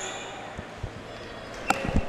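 A basketball bouncing a few times on a hardwood gym floor, separate sharp bounces over quiet hall room noise.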